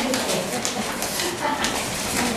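Felt-tip marker writing on a whiteboard: quick scratching strokes with a few short, high squeaks.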